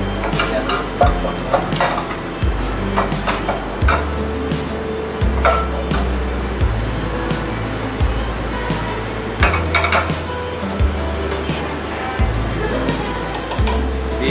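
Butter and olive oil sizzling in a frying pan on a gas burner, with occasional knocks and clinks of the pan and utensils. Background music with a steady low bass line runs under it.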